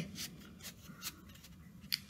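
A cardboard word wheel in a picture book being turned by a finger: faint rubbing with a few light clicks.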